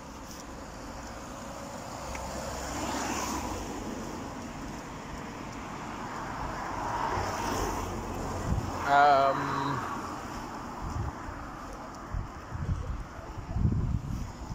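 Outdoor road-traffic noise, with cars passing and swelling about three and seven seconds in, and wind on the microphone. About nine seconds in, the loudest sound: a brief wavering, voice-like call. Low thumps of wind buffeting or handling on the phone microphone near the end.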